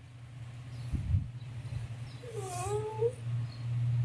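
A single short, high-pitched wavering cry about halfway in, dipping and then rising in pitch, over a steady low hum, with a dull thump about a second in.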